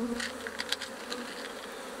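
Steady buzzing of an African honeybee colony (Apis mellifera scutellata) crowding a frame lifted from the open hive, with a few light ticks.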